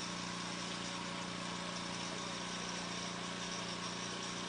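Small engine of a wheeled sidewalk machine running steadily at an even idle while its hose is fed into a rat burrow in the soil. It makes a constant low hum.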